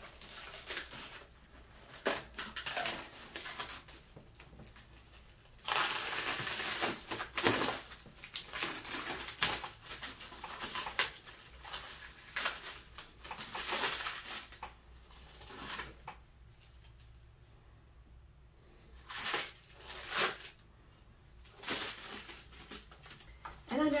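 Plastic wrapping crinkling and rustling in irregular bursts as it is peeled off an acrylic storage cabinet, with a longer run of crackling about six seconds in and a quieter lull past the middle.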